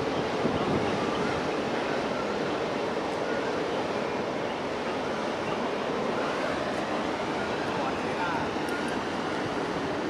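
Steady rush of churned harbour water and wind as a large container ship's stern slides close past, its wake washing through the channel.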